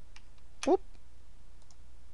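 A few faint computer mouse clicks, two near the start and a couple more past the middle, with a short spoken "whoop" about half a second in.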